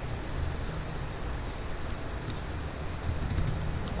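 Steady low background hum with a few faint keyboard clicks around the middle.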